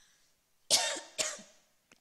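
A woman coughs to clear her throat into a close microphone: one short cough about two-thirds of a second in, followed by a fainter second one.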